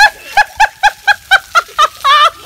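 A person laughing hard: a loud run of short, high-pitched "ha" bursts, about four a second.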